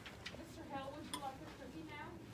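Faint, indistinct voices with a few light clicks and clinks.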